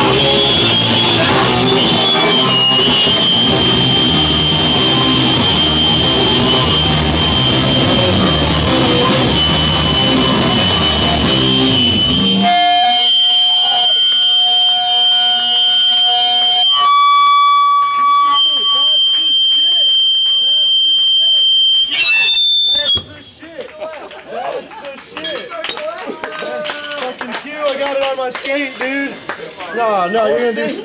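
Live punk band playing loud and dense, with a steady high guitar-feedback whine over it; about twelve seconds in the band stops abruptly, leaving a few held feedback tones and amplifier hum. These cut off about eight seconds before the end, and the crowd talking takes over.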